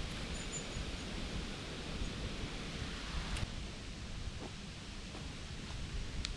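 Steady outdoor forest background noise with faint rustling, a few faint high chirps near the start and a single sharp click a little past halfway.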